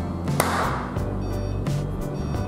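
A single hand clap about half a second in, the cue that the robot's sound sensor waits for to start the race, over steady background music.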